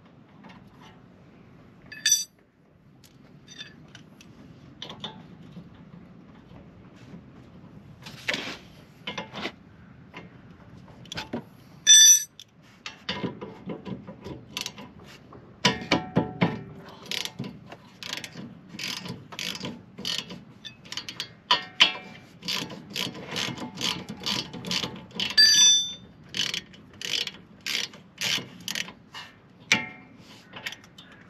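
Ratchet wrench clicking in quick runs as the rear brake caliper's bolts are undone. The runs are sparse at first and become dense and rapid for the second half. Two sharp ringing metallic clinks of tools stand out, one near the start and one around the middle.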